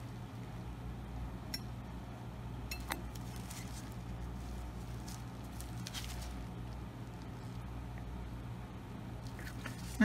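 A gloved hand turning a glass ball ornament, with a few faint clicks and rubs against the glass, over a steady low hum.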